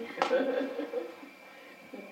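A woman's voice, brief and soft in the first second, then quiet room tone.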